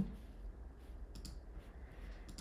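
A few faint computer mouse clicks close together about a second in, over a low steady room hum.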